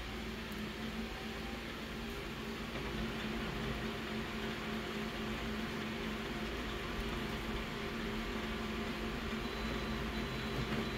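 Office colour laser copier printing a full-colour copy: a steady mechanical whir with a low hum, a little louder from about three seconds in.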